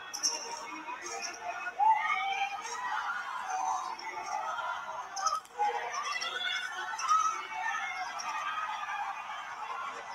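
Overlapping voices mixed with music, with several pitched voices at once that wander up and down.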